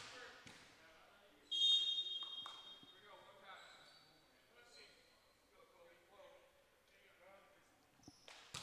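Referee's whistle blown once, a steady high tone starting about a second and a half in and fading over about two seconds, signalling the server to serve. A few faint knocks follow in the gym.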